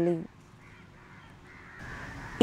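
A woman's narration ends just after the start, then a quiet outdoor background with a faint bird calling, a little louder near the end.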